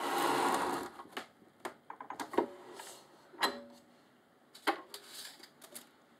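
Stack cutter's blade slicing through the edge of a book block, a rough swish lasting about a second, followed by scattered sharp clicks and taps from the cutter and the paper.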